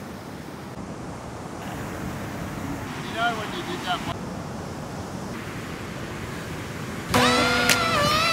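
Steady wash of ocean surf and wind, with a faint, brief voice about three seconds in. Music starts abruptly about seven seconds in.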